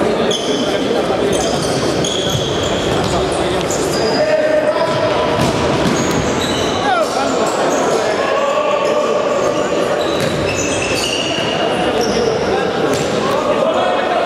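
Futsal play on a sports hall court: the ball being kicked and bouncing off the floor, and players' trainers squeaking briefly on the court again and again.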